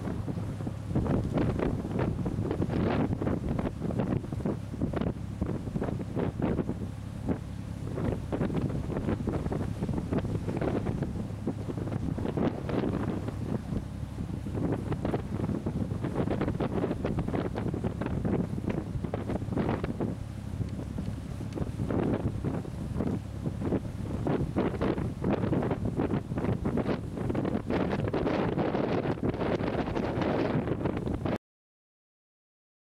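Wind buffeting the microphone in irregular gusts, over the steady low drone of the schooner's engine as it motors under bare poles.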